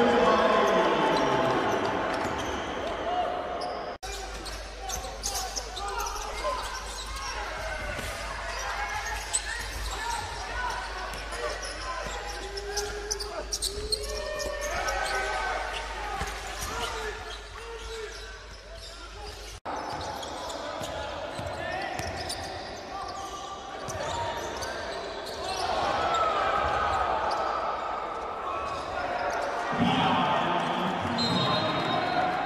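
Live basketball game sound in a large, sparsely filled arena: a ball bouncing on the court, with players and coaches calling out. The sound changes abruptly about four seconds in and again near twenty seconds, at cuts between clips.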